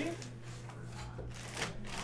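Clear plastic bag around a jersey crinkling and rustling as it is handled, with a few soft rustles about a second in and near the end.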